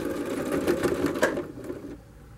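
Electric sewing machine running fast as it backstitches over a belt loop to lock the seam, then stopping about one and a half seconds in.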